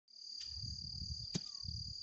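Steady high-pitched trilling of a cricket, one unbroken tone, over a low rumble. A sharp click comes about two-thirds of the way in.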